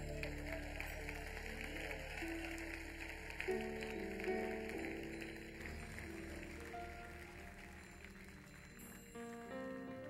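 Soft live worship-band music: sustained chords held and changing slowly, with a hiss of audience noise that stops about halfway through.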